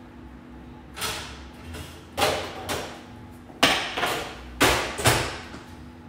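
Oven door and metal baking tray being handled: about six short knocks and scrapes, with the door shut near the end, over a steady low hum.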